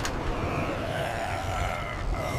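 Cartoon sound effect of a rescue truck's ladder extending upward: a steady low whirring under a hiss, with a faint whine that slowly rises and falls.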